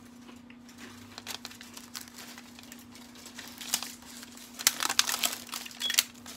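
Plastic packaging of a box of peanut butter Girl Scout cookies crinkling as it is handled: scattered crackles, denser and louder in the last two seconds, over a faint steady hum.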